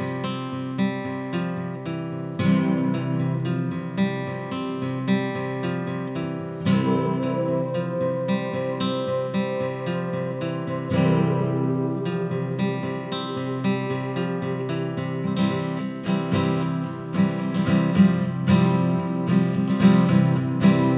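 Instrumental opening of a song: acoustic guitar strumming chords in a steady rhythm.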